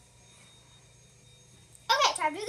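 Quiet room tone for most of the time, then near the end a child's voice starts up with a high, wavering vocal sound.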